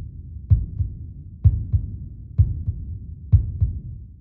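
Low double thumps in a steady heartbeat rhythm, a strong beat followed closely by a softer one, repeating about once a second.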